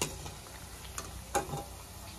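Biscuits deep-frying in hot oil in a steel kadai, a steady sizzle. A metal slotted spoon clinks lightly against the pan a few times as it lifts the fried biscuits out.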